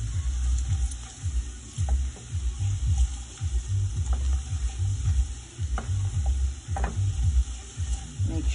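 A silicone spatula stirring and scraping curried potatoes around a stainless steel pan in irregular strokes over a steady sizzle, with a few light knocks. The curry and spices are being fried down ('burned') in oil, the Caribbean way, before the liquid goes in.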